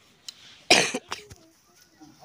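A single loud, sharp cough about two-thirds of a second in, with a couple of brief smaller sounds right after it.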